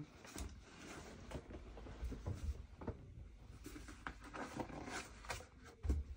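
Sneakers being handled: rustling and rubbing of the shoe in the hands, with scattered small knocks and a thump near the end as he reaches down to the shoes on the floor.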